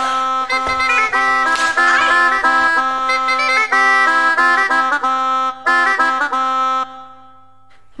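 Bagpipe playing a quick dance tune over a steady drone; the melody stops about seven seconds in and the drone dies away.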